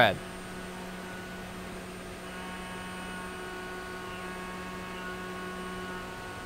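SYIL X7 CNC mill's spindle running a chamfer mill over aluminium parts: a steady hum with several evenly spaced higher tones above it.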